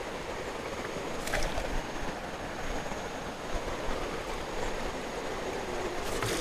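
Shallow rocky stream running steadily over stones, with one brief sharp sound about a second in.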